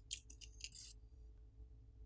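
A few faint, quick clicks and light scrapes within the first second, from small metal and plastic smartphone parts being handled: the rear camera module's press-fit flex connectors being popped off the main board. Then only a faint low room hum.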